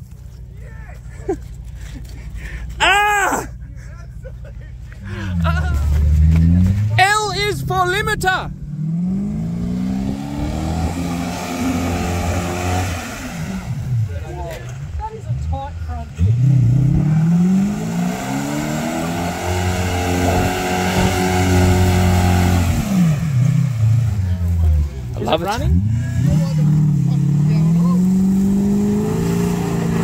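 Land Rover Discovery engine revving hard and easing off again and again as it is driven through deep mud, with mud flung from the spinning wheels near the end. Voices and laughter are heard in the first few seconds.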